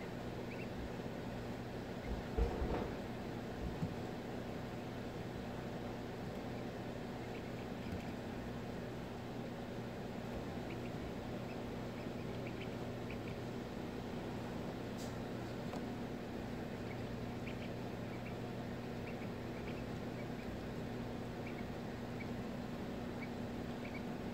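Steady low hum of an egg incubator, with faint, scattered high peeps from a duckling hatching out of its egg. Two soft bumps come about two and four seconds in.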